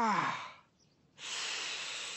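A person groaning: a falling "oh" tails off in the first half second, and about a second later comes a long breathy exhale like a sigh.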